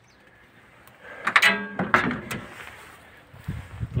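Metal cab door of a T-150 tractor squealing open and clattering about a second in, followed by a few dull thuds near the end.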